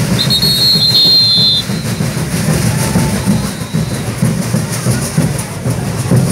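A Moçambique congado group's percussion, drums and shaken ankle rattles (gungas), playing a steady, driving marching rhythm. A high whistle sounds for about a second and a half near the start.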